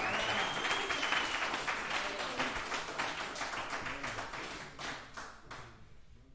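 Small audience applauding, the clapping gradually thinning out and dying away near the end.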